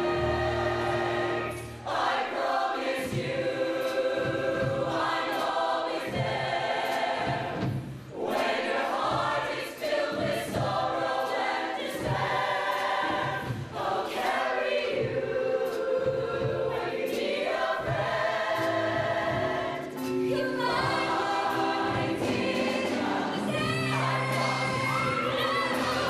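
A mixed show choir of male and female voices singing in harmony over band accompaniment, phrase after phrase with brief breaks between them.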